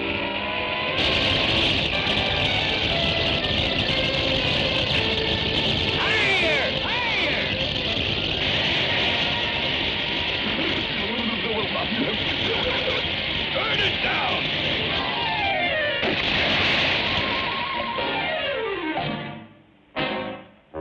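Orchestral cartoon score with sliding pitch effects, and a rushing water-spray sound effect that starts suddenly about a second in as a fountain jet shoots up.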